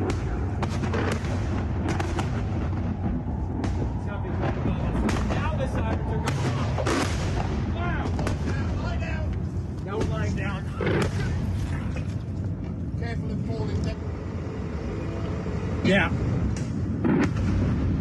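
Explosions in the sky during a massive rocket bombardment, from rockets and the interceptors fired at them. Many sharp bangs come at irregular intervals over a low rumble, with the loudest near the end.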